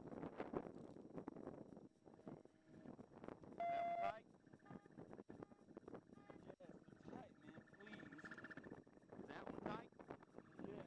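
Faint, indistinct voices of people talking, with a short, loud electronic beep about three and a half seconds in and a fainter high steady tone after it.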